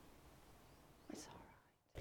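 Near silence, with one faint breathy sound about a second in from an elderly man weeping with his hands over his face, like a sniff or a caught breath. Near the end the sound drops away to complete silence for a moment.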